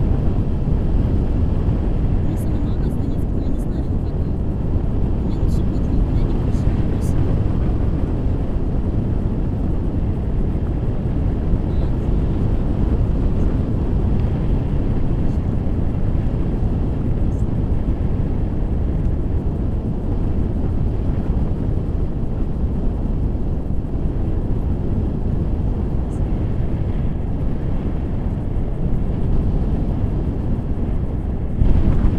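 Steady rumble of wind buffeting the microphone of a selfie-stick action camera during a tandem paraglider flight, with a few faint clicks in the first several seconds.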